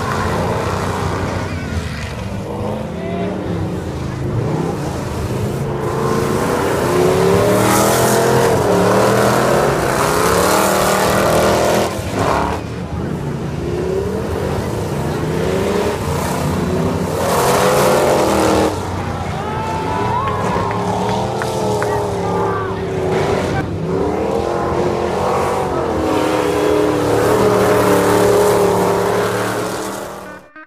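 Several stock car engines racing around an oval, their pitch rising and falling over and over as the cars rev through the turns and pass by, with some tire noise.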